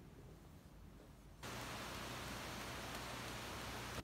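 Faint room noise, then about a second and a half in a sudden, perfectly steady hiss with a low hum underneath that runs on unchanged.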